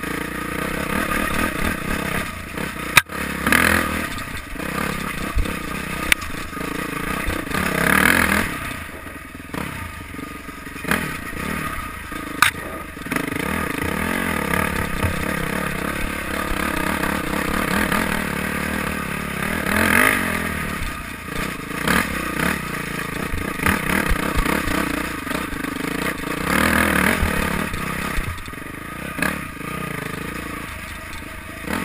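Dirt bike engine riding a rough dirt trail, revving up and falling back again and again with the throttle. Two sharp knocks cut through, about three seconds in and again around twelve seconds.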